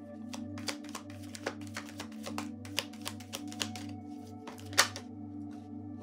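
Tarot deck being shuffled by hand: a run of quick, irregular card snaps and flicks, with one louder snap near the end, over steady background music.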